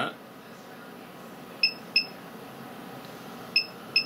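Ultra Beam antenna controller beeping as it retunes the stepper-motor antenna to a new frequency: two pairs of short, high electronic beeps, the first pair about a second and a half in, the second near the end.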